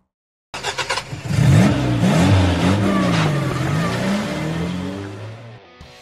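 Engine revving up and down several times, opening with a few quick clicks and fading away near the end.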